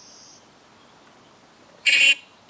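Low hiss, then near the end a short, loud, high-pitched squeal from a smartphone speaker playing the Necrophonic ghost-box app.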